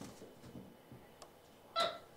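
White-faced capuchin monkey giving a short, high-pitched chirp near the end, after faint scuffling and a single sharp click.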